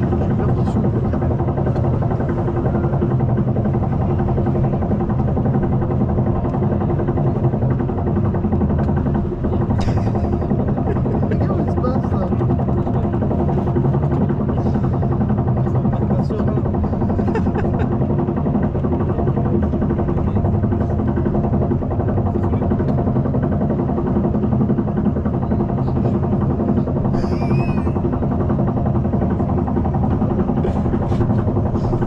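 Vekoma roller coaster train being hauled up its chain lift hill, heard from aboard the train: a steady mechanical drone with the clatter of the lift chain.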